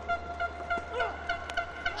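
A fan's horn in the stadium crowd sounding one steady note that pulses several times a second, over faint crowd noise.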